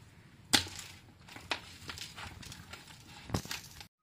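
Raw fish being handled in a plastic bowl: a sharp knock about half a second in, then scattered light taps and rustles, with another louder knock near the end before the sound cuts off.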